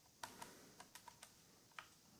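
Faint clicks of a Fire TV remote's buttons being pressed, about six quick presses in under two seconds.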